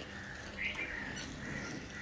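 Birds chirping and calling repeatedly in the background, short calls coming about every half second. A few faint soft clicks come from fingers mixing rice on a steel plate.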